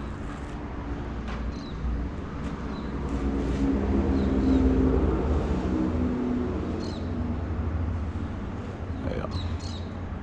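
A low, steady drone that swells to its loudest about halfway through and then fades, over a constant low rumble. A few faint short high chirps come and go.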